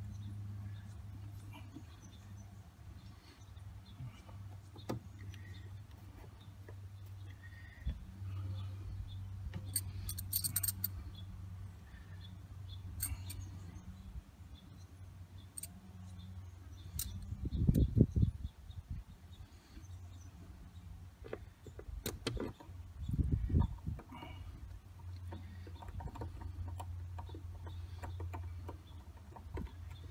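Small metallic clicks and light rattles of hand tools and parts being handled at a truck's windshield wiper motor, over a steady low hum. Two dull thumps come past the middle, the first the loudest.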